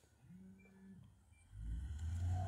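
A man's quiet hesitation sounds in a pause in speech: a soft, short hum lasting about half a second, then a low, drawn-out 'uh' beginning near the end.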